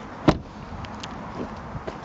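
Hyundai i30's rear passenger door shut with a single thump just after the start, followed by a low steady background hiss.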